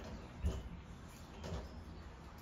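Faint kitchen handling sounds as a banana is broken into pieces by hand for a small blender cup: two soft thumps, the louder about half a second in.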